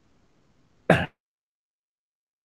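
A person gives a single short throat-clearing cough about a second in.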